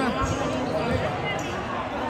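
A basketball bouncing on a gym floor: two dull thumps about two-thirds of a second apart, over the chatter of people nearby.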